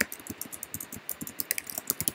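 Typing on a computer keyboard: a fast, uneven run of key clicks.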